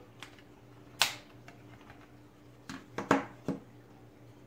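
Plastic clicks from a Lenovo G50-40 laptop's battery latch being slid over and the battery popping up and being lifted out: one sharp click about a second in, then a few lighter clicks and knocks near the end.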